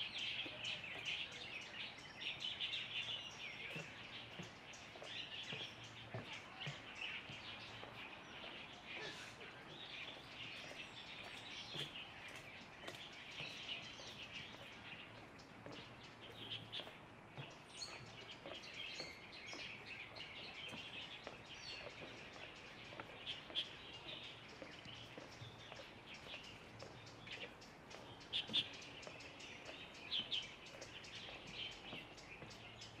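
Small birds chirping in woodland: many short, high calls overlapping continuously, faint overall, with a few louder chirps near the end.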